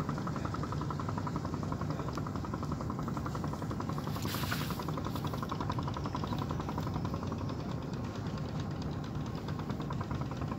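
A boat's engine running steadily with a rapid, even beat. A brief hiss about four seconds in.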